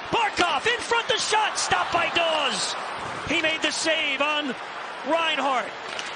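Ice hockey broadcast audio: a commentator's voice over steady arena crowd noise, with several sharp clacks of sticks and puck during play.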